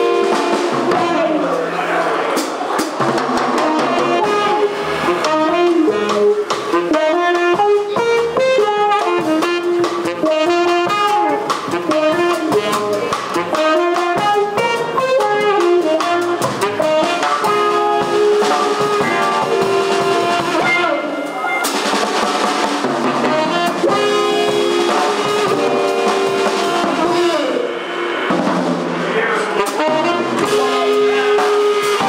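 Live jazz quartet playing: a saxophone carries the melody over archtop electric guitar, upright bass and drum kit with cymbals.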